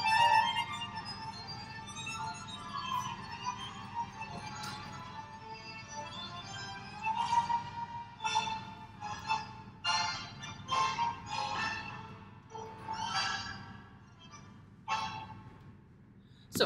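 Argentine tango music playing: a held, sustained melody for the first several seconds, then a run of short, sharply accented chords in a marked rhythm, the music fading away near the end.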